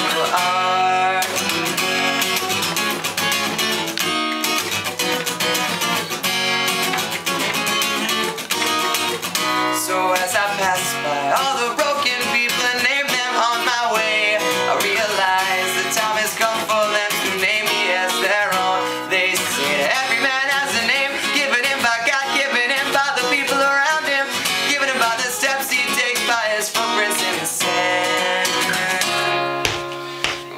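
Steel-string acoustic guitar strummed steadily, with a young man's voice singing over it for much of the passage.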